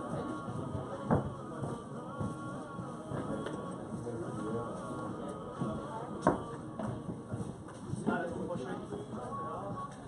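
Padel rally: several sharp knocks of the ball being struck, a couple of seconds apart, the loudest about six seconds in, over background music and voices.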